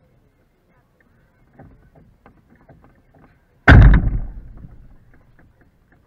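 A sudden loud knock against the chain-link backstop fence right at the microphone, rattling as it dies away over about a second and a half, after a few faint clicks.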